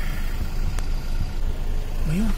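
Car engine running, heard from inside the cabin as a steady low rumble.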